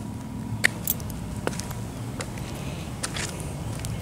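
Footsteps on stone paving: a few irregular light taps and clicks over a steady low outdoor rumble.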